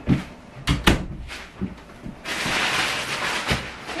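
An interior door being handled and pushed shut, with a few sharp knocks and clicks in the first two seconds. A second or so of close rustling follows past the middle, then one more knock.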